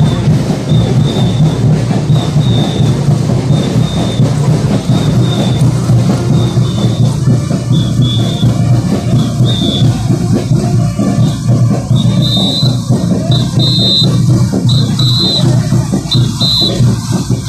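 Loud band music with a steady beat, played for Puno folk dancers parading in the street. Short high notes repeat over the last few seconds.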